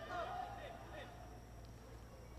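Faint, distant shouts of players calling out on the pitch, over a low steady hum of open-air stadium ambience.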